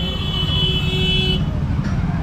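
Busy street traffic with vehicle engines running, and a vehicle horn sounding steadily for about the first second and a half.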